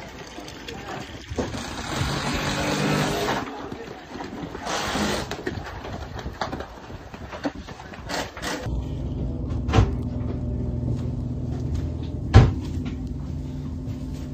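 A steady low machine hum sets in about two-thirds of the way through, broken by two sharp knocks, over rushing background noise and faint voices earlier on.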